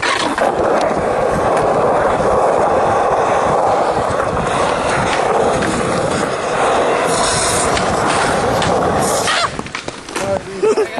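Skateboard wheels rolling on smooth concrete: a loud, steady roll with a few clicks over joints, stopping shortly before the end.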